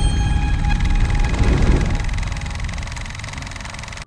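Cinematic logo-intro sting: a deep, rumbling boom left by an impact just before, slowly fading away, with faint high sustained tones ringing on above it.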